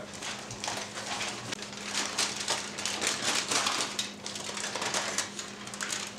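Aluminum foil crinkling and crackling as it is peeled off a foil pan and crumpled in the hands, a quick irregular run of crackles.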